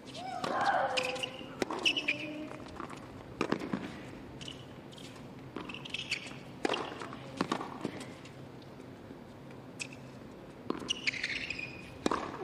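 A serve and a baseline rally on a hard tennis court: sharp racket strikes on the ball and ball bounces, a few seconds apart, with a player's loud grunt on several of the shots, the longest on the serve.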